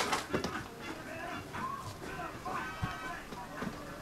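Faint speech and music in the background, with a few light knocks.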